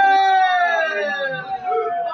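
A man singing one long, high held note that slides slowly down in pitch, with no drum under it.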